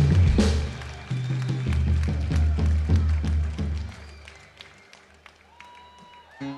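Live band with a drum kit and low bass notes playing the last bars of a song. The drums and cymbals strike repeatedly until the music stops about four seconds in, leaving faint scattered applause.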